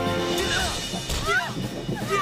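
TV fight-scene soundtrack: background music with impact sound effects and short, high-pitched cries that rise and fall in pitch.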